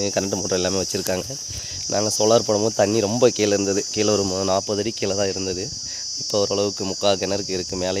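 A steady high-pitched insect chorus, with a person talking over it.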